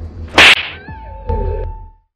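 A loud, sharp whip-like slap crack about half a second in, over a deep bass rumble, followed by a steady held tone that cuts off suddenly at the end: an edited-in slap sound effect.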